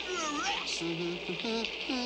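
Wordless cartoon voice: a run of short hums and whines that slide up and down in pitch.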